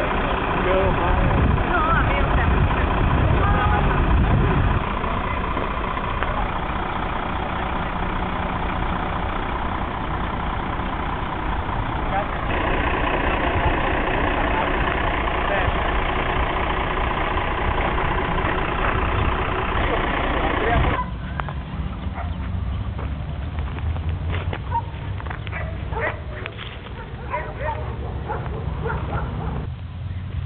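Diesel engine of a truck-mounted crane running steadily, with people's voices over it. About 21 seconds in it stops suddenly, leaving quieter open-air sound with scattered light clicks and rustles.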